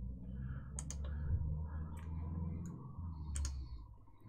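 Computer mouse clicks: a pair of sharp clicks about a second in, a single one about two seconds in, and another pair near the end, over a low steady hum.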